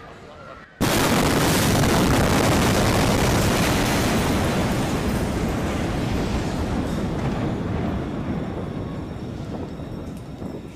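The blast wave of the 2020 Beirut port explosion (an ammonium nitrate detonation) hitting nearby: a sudden loud blast about a second in, followed by a long roar of noise that slowly dies away over the next several seconds.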